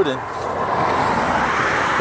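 A car driving past on the highway, a rush of tyre and road noise that swells toward the end.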